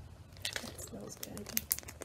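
Small clear plastic bag crinkling in the hands, in a few short, sharp crackles, as a wax melt inside it is held up and handled.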